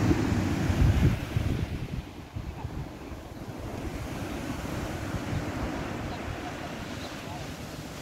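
Small sea waves washing onto a sandy beach, with wind buffeting the microphone, loudest in the first second and a half.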